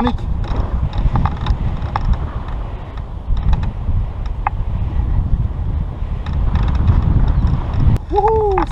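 Wind from a paraglider's flight buffeting the camera microphone: a steady low rumble, with scattered small clicks and creaks.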